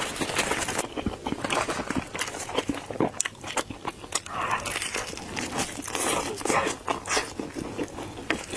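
Close-up chewing and biting into a sauce-coated fried chicken drumstick: a dense, irregular run of crisp crackles and clicks from the breading between the teeth.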